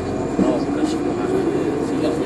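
Steady cabin noise inside a 2014 NovaBus LFS articulated diesel-electric hybrid bus under way: a low drivetrain hum with road noise from its Cummins ISL9 diesel and Allison EP 50 hybrid system. Passengers' voices run over it.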